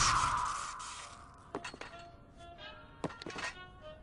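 The ringing tail of a loud cartoon crash fades out over about the first second. A few light clicks follow, with soft music under it.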